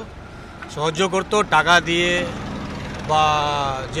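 A man speaking Bengali in short phrases, ending in a long drawn-out 'aah' of hesitation. Street traffic noise runs underneath.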